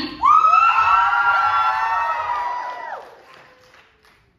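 Several high voices shrieking together in one long shriek that starts suddenly, swoops up in pitch and is held, ending together about three seconds in.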